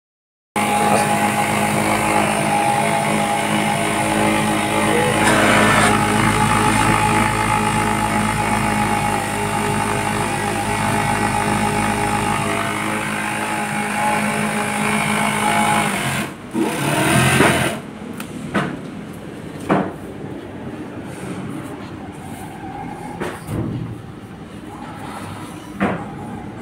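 Kingtex industrial sewing machine running steadily while stitching fabric, then stopping about sixteen seconds in. A loud burst of noise lasting about a second follows, then scattered light knocks and clicks.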